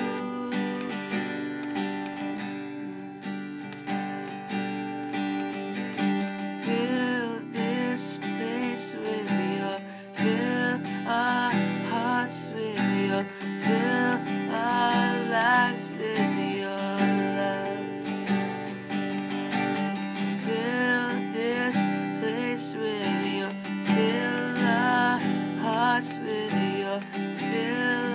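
A song with strummed acoustic guitar and a singing voice carrying the melody.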